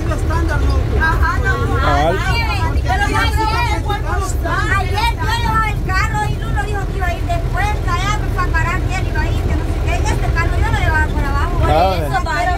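Steady low rumble of a truck driving on a dirt road, heard from its open cargo bed, with people's voices talking over it.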